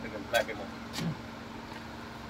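A man's voice says one word, "black", then a short sound about a second in, over a steady background hum with a constant low tone.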